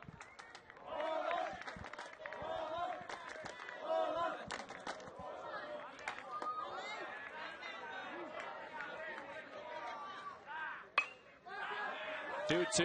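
Crowd and players chattering and calling out at a baseball game. About eleven seconds in comes a single sharp crack of a bat hitting a pitched baseball, a swing that pops the ball up.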